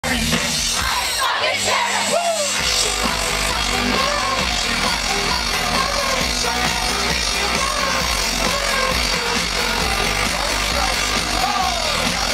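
Live electro-pop band played loud through an outdoor festival PA, heard from inside the crowd, with the crowd yelling. A heavy bass beat comes in about two and a half seconds in.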